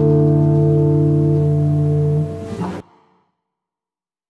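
Final chord of a song strummed once on an acoustic guitar right at the start, left ringing steadily, then dying away and cutting to silence just before three seconds in.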